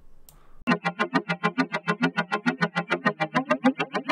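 Synthesizer tone run through the TugSpekt image-based FFT spectral filter, starting just under a second in and chopped into rapid, even pulses of about eight a second.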